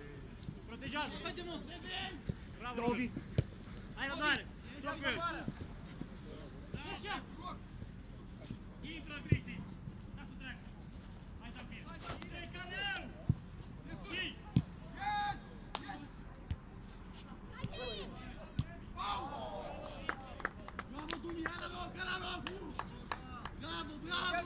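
Footballers shouting to each other across the pitch in short calls, with a few sharp thuds of a football being kicked, the loudest about nine seconds in.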